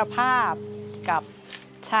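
Steady, high-pitched shrilling of insects behind a woman's speech.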